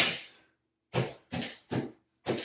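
A throw pillow dropped onto a wooden bench with a sharp thump, then patted into place with three quick soft pats about a second later.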